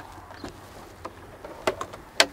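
A few light clicks and taps from hands handling the loose plastic dashboard and steering-column cover of a Land Rover Defender, spaced irregularly over the two seconds.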